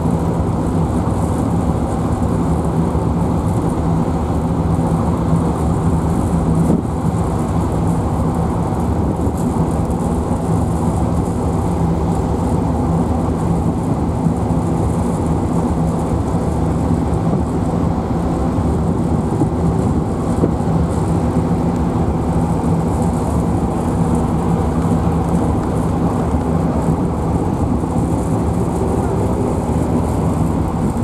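Tokyo Wan Ferry car ferry under way, its engines making a steady low drone over an even rush of wind and churning wake water.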